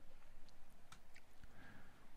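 Faint room tone with a few soft, scattered clicks.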